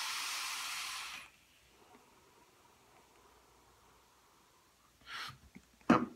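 Steady hiss of air rushing through the drip tip and airflow holes of an empty rebuildable dripping atomizer, a check that its airway is clear; it stops after about a second. A short breathy sound comes near the end.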